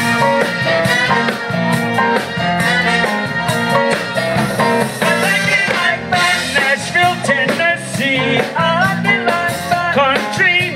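Live salsa band playing through the stage speakers, with congas and a singer.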